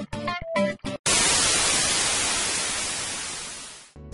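Plucked guitar music for about a second, then a sudden loud burst of static hiss, like an untuned TV, that slowly fades away over about three seconds.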